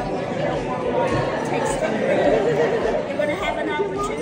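Speech only: indistinct talking with background chatter from several voices.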